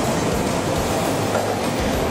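Steady noise of an Osaka Metro 21 series subway train at an underground platform.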